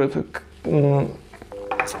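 Electronic feedback tone from the RaceFox ski-technique app on a smartphone speaker, a steady buzzy tone starting about one and a half seconds in. This is the app's unpleasant hum that signals the pole-push attack reading is below the 11.5 target.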